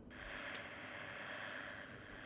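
Cable locator receiver in radio mode giving a faint, steady static hiss from its speaker, the gain just turned down.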